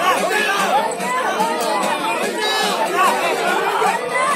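A large crowd's many voices talking and calling out over one another in a dense, steady babble.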